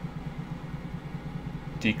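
A steady low electrical hum with a faint fluttering pulse to it: background noise in the recording between words.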